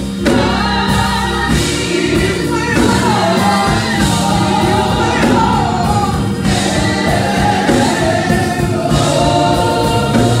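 A women's gospel vocal ensemble singing together into handheld microphones, loud and continuous.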